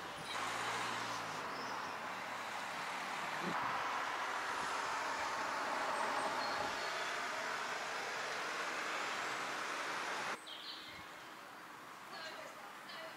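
Steady road-traffic noise: a broad rushing of passing vehicles that swells in the middle and cuts off abruptly near the end.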